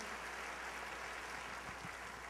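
Quiet room tone of a large hall during a pause in speech: a steady faint hiss and low hum, with a couple of faint knocks near the end.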